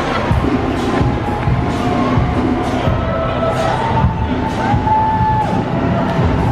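Loud music playing with a street crowd cheering and shouting over it.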